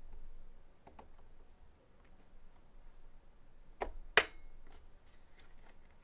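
Plastic snap-fit clips of a Huion Kamvas 22 Plus pen display's back cover clicking as a flathead screwdriver pries along the seam: faint ticks about a second in, then two sharp snaps a fraction of a second apart a little under four seconds in, followed by lighter ticks.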